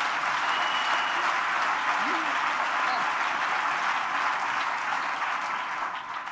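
Audience applauding in a hall, a steady clapping that eases slightly near the end.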